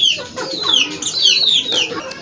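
Young Aseel chickens peeping: a run of short, high calls, each falling in pitch, several in two seconds.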